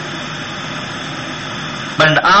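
Steady, even rushing noise with no speech in it.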